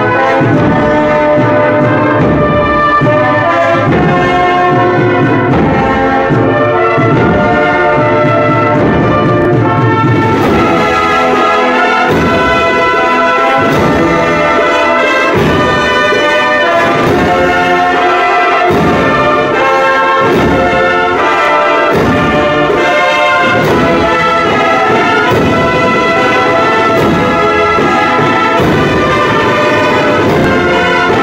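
An Andalusian Holy Week brass band of trumpets, cornets and trombones playing a slow processional march in full chords, with percussion strikes joining about ten seconds in.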